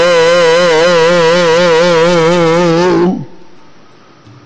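A male voice singing Gurbani kirtan, holding one long note with a wide vibrato that ends about three seconds in and then falls away to a much quieter level.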